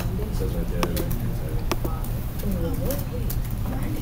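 Muffled background voices in a room over a steady low hum, with a few sharp clicks about one and two seconds in.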